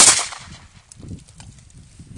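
A single pistol shot right at the start, its report trailing off over about half a second.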